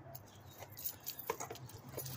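Shoes scuffing and stepping on concrete as a person walks away, a few irregular faint clicks over a steady low hum.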